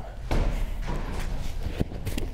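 Several dull thuds of a medicine ball coming back off the wall and landing on artificial turf after a side throw, with footsteps as the thrower recovers from his lunge.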